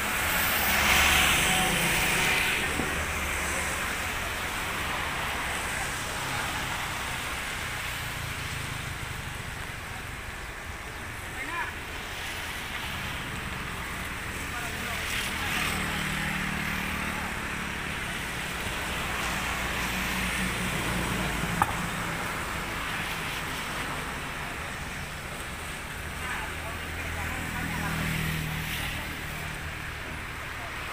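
Outdoor ambience with wind rumbling on the microphone and faint voices of people in the background, loudest in a gust about a second in. A single sharp click comes near the end.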